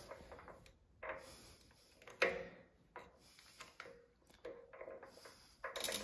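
A few faint clicks and light taps, the sharpest about two seconds in, from a small hex-key tool working the set screw of a motorcycle front axle nut cover as the cover is pressed onto the axle.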